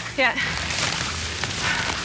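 Leaves and branches rustling with footsteps as people push through dense forest undergrowth, as a steady noise, over a low sustained music tone.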